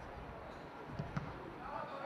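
A football being kicked: two quick thuds about a second in, the second one louder.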